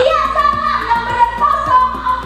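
A woman singing into a microphone over a backing track with a steady beat, holding long notes that slide between pitches.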